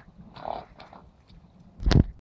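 Horses moving on wet sand, with scattered soft hoof clicks and a short breathy noise about half a second in. A loud, sudden thump near the end.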